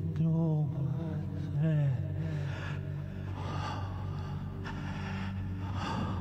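A man's wordless vocalizing: a wavering, moaning chant for about the first two seconds, then heavy breaths and gasps, over a steady low drone.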